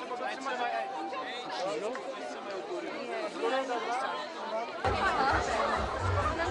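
Crowd chatter: many people talking at once in overlapping voices. About five seconds in it grows fuller, with a low rumble underneath.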